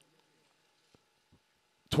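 A pause in speech over a loudspeaker system: the last words die away in an echo, then near silence with a faint steady hum and two faint clicks, before a man's amplified voice comes back in near the end.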